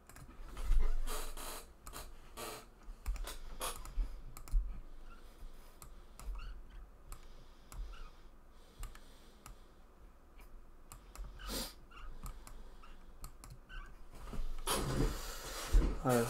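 Irregular clicking of a computer mouse and keyboard keys: scattered single clicks, with a louder cluster about a second in.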